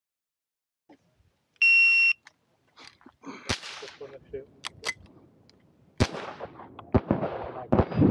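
A shot timer's start beep, one loud steady electronic tone lasting about half a second, then, from about a second and a half later, a string of shots at uneven spacing from a GSG Firefly .22 LR pistol fitted with a muzzle brake, firing CCI Mini-Mag rounds.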